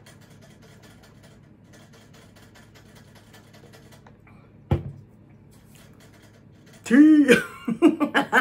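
Quiet sipping through a plastic tumbler's straw, then a single sharp knock a little past halfway as the tumbler is handled. Near the end comes a short voiced sound whose pitch rises and falls, breaking into quick laughter.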